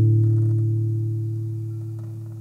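An acoustic guitar chord left ringing and fading steadily, with no new strums.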